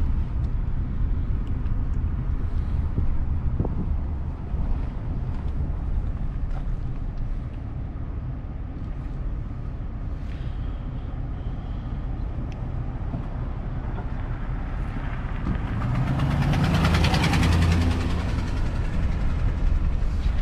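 Car driving slowly, heard from inside: a steady low engine and tyre rumble with road hiss. Near the end a louder rushing sound swells for about three seconds and fades away.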